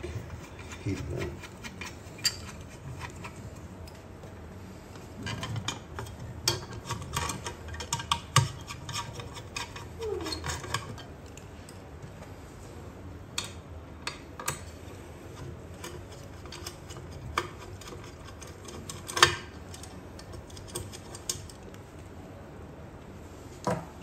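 Hand tools working the small screws out of a 3D printer's aluminium heat bed: scattered light metal clicks and clinks from the screwdriver, screws and a holding tool, busiest in the first half, with one sharper click about three quarters of the way through.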